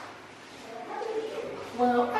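A woman's voice making drawn-out, whiny, sliding vocal sounds, going into a held sung note near the end.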